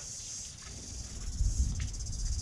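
Steady high-pitched chorus of insects chirping. About two-thirds of the way in, a low rumble joins it, with a faint click shortly after.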